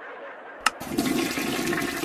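Toilet flush sound effect: a sharp click, then rushing, gurgling water for about a second and a half.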